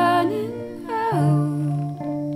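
A female voice sings a melody without words, sliding down in pitch about a second in. Low sustained cello notes play under it and change pitch at the same moment.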